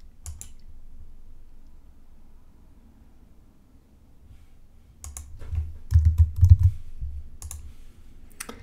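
Computer mouse and keyboard clicks: a single click just after the start, then a quick run of key taps with dull knocks from about five seconds in.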